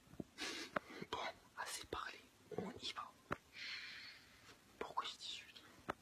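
A man whispering close to the microphone, with a few sharp clicks between phrases and a drawn-out hiss about three and a half seconds in.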